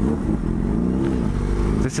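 A Yamaha FZ6's 600cc inline-four engine, fitted with an aftermarket SP Engineering dual carbon exhaust, running on the move, its pitch rising and falling back once about the middle.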